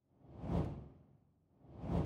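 Two whoosh transition sound effects in an animated logo intro, each swelling up and fading away, about a second and a half apart; the second peaks near the end.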